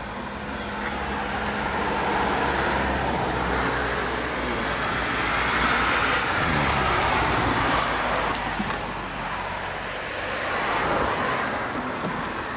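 Road traffic passing: tyre and engine noise swelling and fading, loudest between about two and eight seconds in and rising again near the end.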